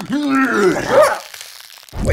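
A man's voice in a strained, rising cry or laugh that breaks off about a second in, followed by a faint rustling noise from a cartoon scuffle.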